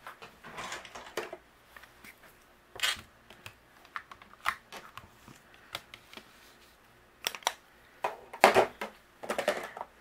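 Light clicks, taps and brief rustles of cardmaking tools handled on a tabletop: a stamping positioner and an anti-static powder pouch being dabbed over cardstock. The loudest rustles come near the end.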